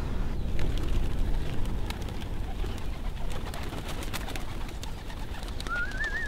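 Young Adana pigeons being tossed up and taking off, with a few wing flaps over a steady low rumble; a warbling whistle starts near the end.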